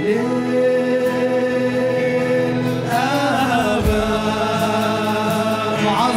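Live Arabic Christian worship song: a male lead voice holds one long note over keyboard and guitars, then moves into a new phrase. Drums and low bass notes come in about halfway through.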